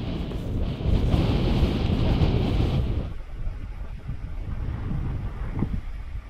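Powerful wind buffeting the microphone in a low rumble, strongest for the first three seconds and then easing off.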